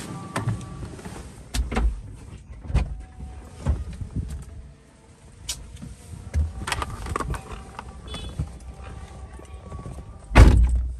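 Low rumble of a small car heard from inside the cabin, broken by irregular sharp knocks and clunks, roughly one a second.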